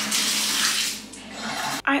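Bathtub tap turned on and running, a steady rush of water into the tub that cuts off suddenly near the end.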